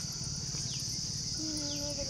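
Steady, high-pitched chirring of insects such as field crickets.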